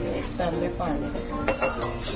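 Stainless-steel utensils clinking: two sharp, ringing metal knocks about a second and a half in, as the steel jug used to pour water into the pan of dal is put down.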